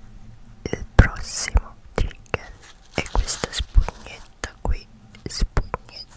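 Close-up whispering into a Blue Yeti microphone, broken by irregular sharp clicks, a few a second, with a couple of short breathy stretches.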